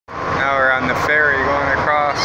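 A person's voice, with long gliding notes, over a steady low background noise.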